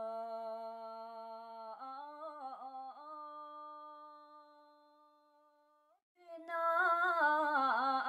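A woman's unaccompanied voice singing long held notes of traditional Bhutanese song. The note bends and wavers in ornaments about two seconds in, then fades away; after a brief break near the end a louder new phrase begins.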